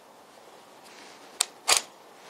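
Tokens of a 3D-printed Binary Disk sliding puzzle being pushed across the disk and snapping into place, their magnets making a sharp click with each move. There are two clicks in quick succession about a second and a half in.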